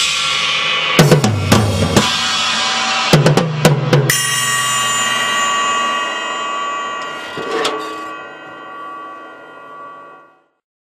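Drum kit playing two quick fills of rapid drum strokes, closing on a crash about four seconds in. The cymbals then ring out and slowly die away, with one light hit near the end of the ring.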